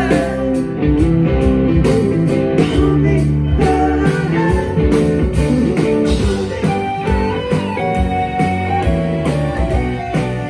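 A live rock band playing an instrumental passage without vocals: guitars and keyboards over a steady drum beat, amplified through the stage PA.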